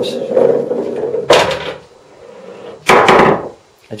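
A 2-inch UK pool ball rolls along a pool table's ball-return runner with a rumble for about a second. Then come two sharp knocks about a second and a half apart, the second the louder, as the ball drops into the ball-return compartment.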